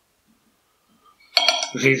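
Near silence, then a knife and fork clink against a plate in a quick cluster about a second and a half in, as an omelette is cut.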